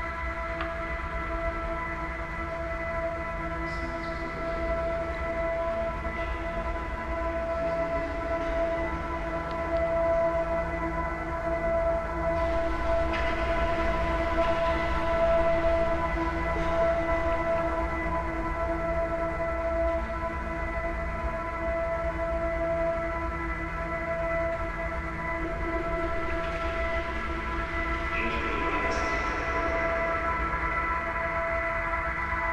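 Ambient music: a steady drone of several held tones over a low rumble, with no beat.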